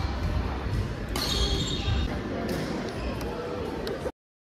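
Badminton being played on nearby courts in a large hall: a few sharp racket-on-shuttlecock hits with short high squeaks, over a murmur of voices echoing in the hall.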